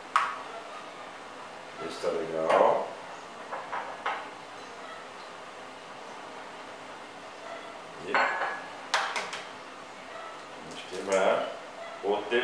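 Crockery clinking and knocking on a countertop while eggs are broken into a ceramic cup and tipped into a plastic mixing bowl. There are a few sharp knocks, two of them close together about nine seconds in.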